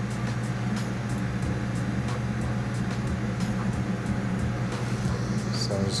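Steady rushing of a glassblowing bench torch flame, with a low steady hum underneath.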